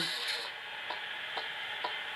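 Radio static, a steady hiss with a short click about twice a second.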